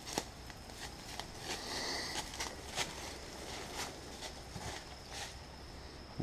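Faint rustling and light footsteps through grass, with a few soft scattered clicks.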